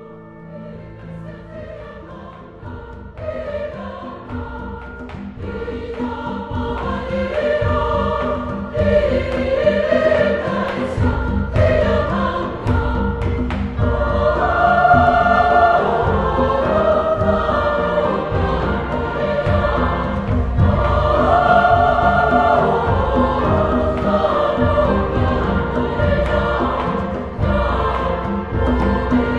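Background music with a choir singing over instrumental accompaniment, swelling in loudness over the first several seconds and then holding steady.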